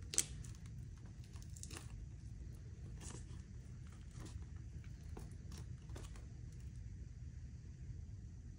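Faint, scattered crinkling and crackling as hands flex and turn a homemade Kevlar armor layer whose silicone coating is cracked and flaking loose, over a low steady hum.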